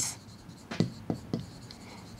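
Writing by hand on a board: several short strokes and taps as words are written out.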